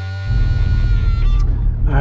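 Guitar music ends as, about a quarter second in, the loud, steady low rumble of a 2002 Toyota Tacoma pickup driving a rough dirt road takes over, heard from inside the cab.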